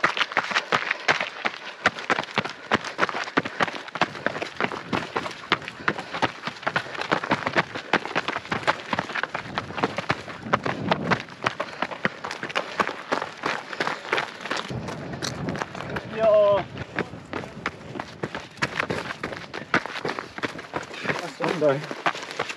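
Running footsteps on a rocky dirt trail: quick, uneven crunches and scuffs of shoes on stones and gravel at a steady running pace.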